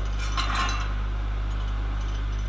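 A steady low electrical hum, with a faint brief sound about half a second in.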